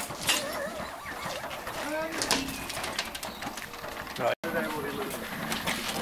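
Indistinct men's voices with scattered knocks from hoses and metal couplings being handled. The sound cuts out completely for a moment a little past four seconds in.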